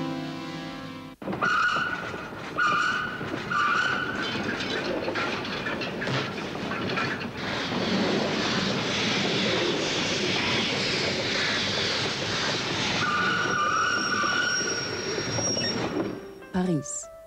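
Steam train arriving: a steady rush of steam and rolling wheels, with three short high tones about a second apart near the start and a longer one near the end. Background music cuts off suddenly about a second in as the train sound begins.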